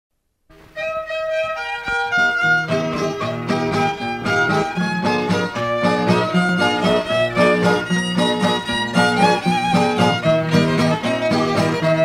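Instrumental introduction of a corrido, a violin playing the melody over a rhythmic guitar accompaniment that fills in about two seconds in. The music starts after about half a second of silence.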